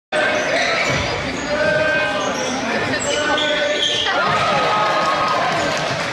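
Basketball bouncing on a hardwood gym floor during play, with players' and spectators' voices calling out in a large gymnasium.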